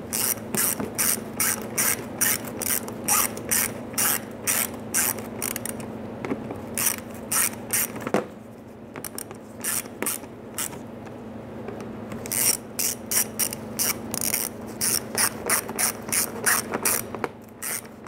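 Hand ratchet clicking in runs of strokes as it drives screws into the splash shield's retaining clips, with a lull about halfway through.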